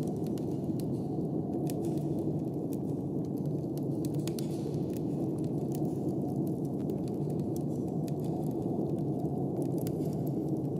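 Wood fire crackling with scattered sharp pops, over a steady low rush of snowstorm wind.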